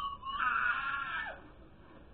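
A girl's high-pitched squeal, lasting about a second and falling in pitch as it ends.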